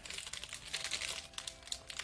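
Pokémon TCG booster pack's foil wrapper crinkling and crackling in a rapid run as it is torn open by hand.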